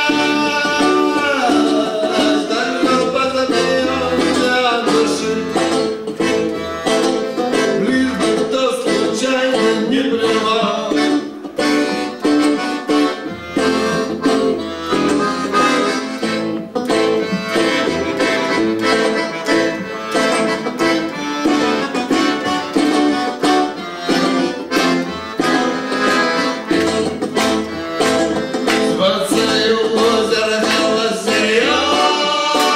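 Live band music: an instrumental passage with pitched melody lines over a steady rhythm, with no clear singing.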